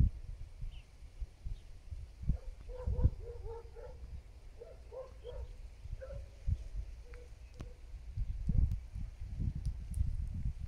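A cat growling at other cats creeping toward it, a string of short, low, wavering notes that run from about two to six seconds in: the sign of an angry, defensive cat. A low rumble on the microphone runs underneath.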